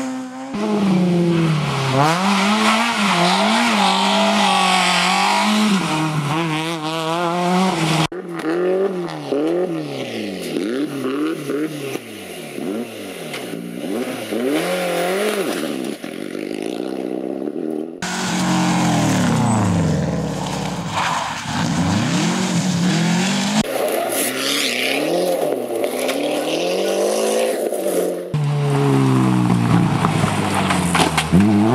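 Rally car engines revving hard as the cars pass through a stage, heard in a run of short clips. The engine note climbs and drops again and again with the gear changes and braking. The sound changes abruptly several times where one car gives way to the next.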